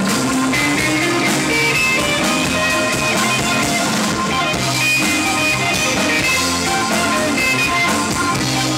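Live rock band playing an instrumental passage: electric guitar, bass and drum kit, with Hammond organ, sounding continuously with held notes over a steady beat.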